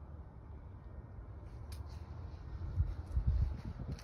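Low rumbling handling noise on a handheld phone microphone while walking across a lawn, louder about three seconds in, with a few faint clicks.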